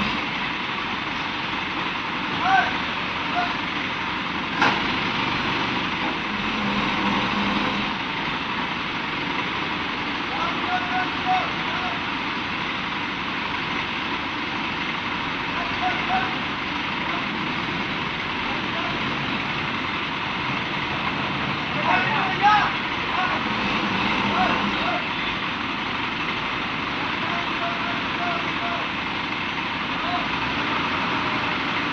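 Diesel engines of ACE Hydra pick-and-carry cranes running steadily under load as they hoist a transformer off a truck.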